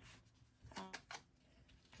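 Near silence with faint handling of a paper sticker sheet: soft rustles and a couple of light clicks, and a brief soft voice sound a little under a second in.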